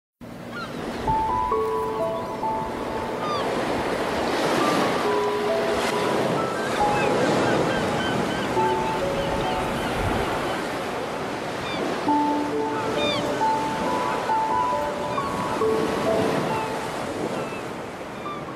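Ocean surf washing and breaking in slow swells. Over it runs a sparse melody of short held notes at changing pitches, with scattered high bird chirps.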